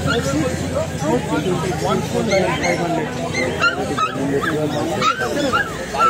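Puppies yipping and whimpering: a run of short, high cries in the second half, over background chatter.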